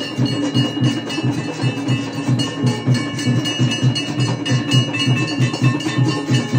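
Temple bells ringing continuously over a fast, steady drumbeat of about four to five strokes a second: the music of a Hindu aarti.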